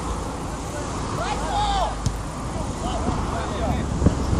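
Players' shouts on a football training pitch: a few rising-and-falling calls in the middle, over a steady low rumble, with a single sharp knock about two seconds in.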